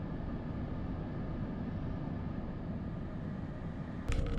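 Steady hum and hiss heard inside a parked car's cabin, even throughout with a faint steady tone above it.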